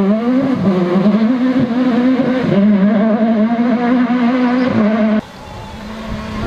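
Peugeot 306 Maxi rally car's engine held at high revs as it pulls away, its pitch dipping briefly a few times. The sound cuts off abruptly about five seconds in, leaving a much quieter background.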